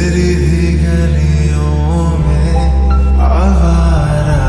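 Slowed, reverb-heavy lofi remix of a Hindi pop song: sustained deep bass notes under a melody line with sliding notes, the bass note changing about halfway through.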